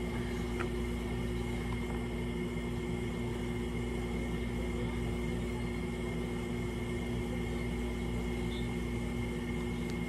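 A steady machine hum with a faint high whine over it, unchanging throughout.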